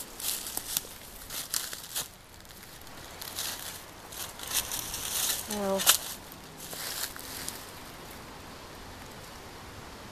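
Footsteps crunching and rustling through dry fallen leaves, in irregular crackly strokes, with a short voiced sound from the walker about six seconds in. The crunching stops around seven and a half seconds in, leaving only a faint outdoor hush.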